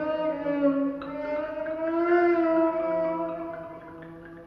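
Live instrumental music from a small tango-jazz ensemble: two long held notes that slowly slide upward in pitch, swelling about two seconds in and then fading.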